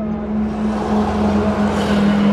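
Steady low hum inside a car's cabin, with a rushing noise that swells near the end.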